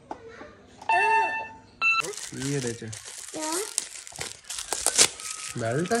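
Glossy gift-wrap paper crinkling and tearing as a present is unwrapped. It starts suddenly about two seconds in and goes on as a dense, crackly rustle with sharp snaps, with a small child's voice over it.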